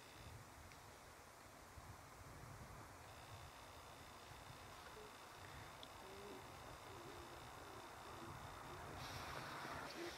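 Near silence: faint outdoor room tone, a steady low hiss with a thin, steady high faint tone running through it.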